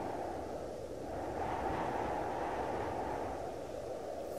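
Low, muffled rushing noise with no clear pitch, swelling slightly about a second in and then holding steady.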